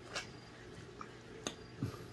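Faint mouth sounds of someone biting and sucking on a slice of lime: a few soft smacks and clicks, with a brief low hum near the end.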